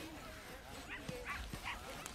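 A dog whimpering and giving a few short, faint yips, with three brief higher calls in the second half.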